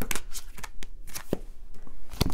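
Tarot cards handled on a table as a card is drawn and laid down on the spread: a run of quick card clicks and slides in the first half second, then a single tap a little over a second in.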